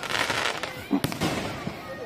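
Aerial firework shells bursting overhead: a sharp bang at the start followed by a crackling shower of glitter stars, then a second sharp bang about a second later.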